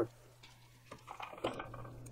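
A few faint, light clicks and taps of a soldering iron tip working against header pins on a circuit board, over a steady low electrical hum.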